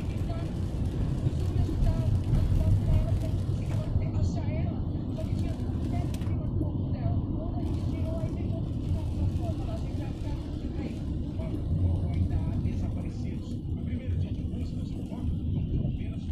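Steady low rumble of a car's engine and tyres on a wet road, heard from inside the cabin while creeping along in slow traffic in the rain, with a faint voice underneath.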